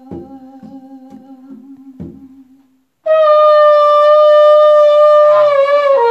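Conga drums beat a steady pulse of about two strokes a second under a low held hum, stopping about two seconds in. About three seconds in, a shofar sounds one long, loud blast that holds a steady pitch and bends downward as it ends.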